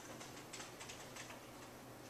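Computer keyboard being typed on: a quick run of faint key clicks that stops about one and a half seconds in.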